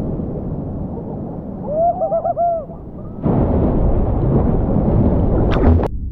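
Seawater sloshing and rumbling around a GoPro held at the ocean surface, muffled at first. A brief wavering hoot comes about two seconds in. About three seconds in the water noise turns suddenly louder and brighter, with two sharp splashes near the end.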